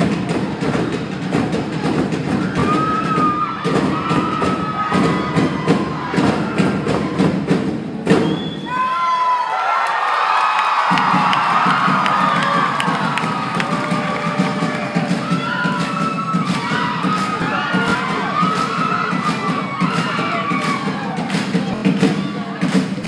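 Live Tongan group singing over a steady drumbeat and a full low accompaniment. About eight seconds in, the music breaks off for a couple of seconds while the crowd cheers and whoops. The singing and drumming then start again over continued cheering.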